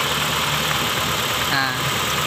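Honda City i-DSI twin-spark four-cylinder engine idling steadily while a rear ignition coil's connector is pulled, a cylinder-by-cylinder test for the coil or spark plug behind a rough, misfiring idle.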